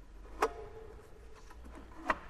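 A Mafell band saw handled while switched off: one sharp click about half a second in, then a few faint ticks, as the saw's housing and tilting parts are moved by hand.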